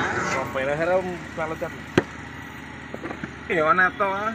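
People talking near the pot, with one sharp knock about halfway through.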